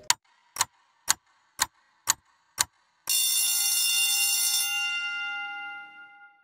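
Stopwatch-style ticking sound effect, six sharp ticks about two a second, followed by a single bright bell ding that rings out and slowly fades.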